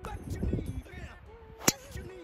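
Golf driver striking a ball off the tee: a single sharp crack near the end.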